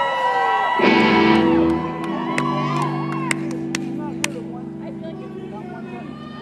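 Concert crowd whooping and cheering while a sustained chord starts about a second in and rings on, slowly fading. A few sharp clicks come in the middle.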